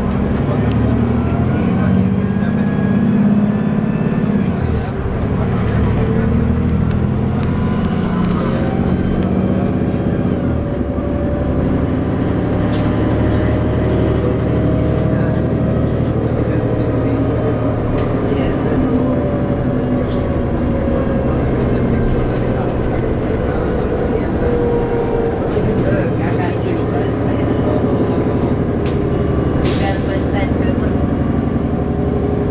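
A 2009 New Flyer D40LFR city bus under way, heard from inside: its Cummins ISL diesel engine and Voith D864.5 automatic transmission running steadily, with a tone that slowly rises and falls as the bus changes speed.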